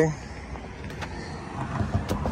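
Low, steady outdoor background noise with faint knocks and handling sounds as the golf cart's seat is tipped up.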